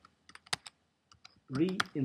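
Computer keyboard keys pressed about half a dozen times, as separate sharp clicks, while code is edited; speech starts near the end.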